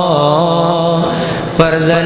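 A man chanting a Pashto naat, a devotional poem in praise of the Prophet, solo into a microphone, holding a long wavering note. The note fades about a second in and a new phrase starts sharply near the end.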